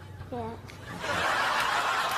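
A child's short "yeah", then laughter from a group of listeners, starting about a second in and still going at the end.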